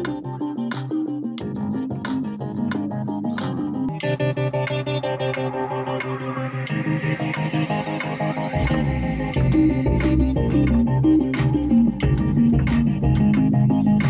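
Studio music: an electric bass guitar plays a line over a keyboard backing with a steady beat of sharp ticks. A deeper, louder bass part comes in about eight and a half seconds in.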